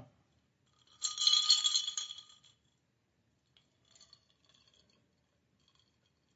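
A drinking glass clinking and rattling as it is lifted, about a second in, ringing for about a second and a half, then a few faint clinks.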